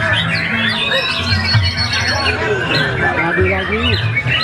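Several caged white-rumped shamas singing at once: a dense, overlapping tangle of quick whistled phrases and chirps, with a low steady murmur beneath.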